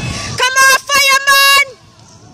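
A spectator yelling to cheer on the runners: three loud, drawn-out high shouts in quick succession, each held at a steady pitch, the last dropping off at its end.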